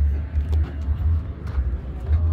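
Wind buffeting the microphone: a low, uneven rumble that comes and goes in short gusts, with faint open-air background noise.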